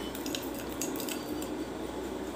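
A spoon clinking lightly a few times against a small glass bowl while stirring face-pack paste.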